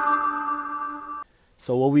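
A bell-like synth chord from the Cloud Supply Kontakt instrument, struck just before and left ringing as it fades, cut off abruptly a little over a second in. A man starts talking near the end.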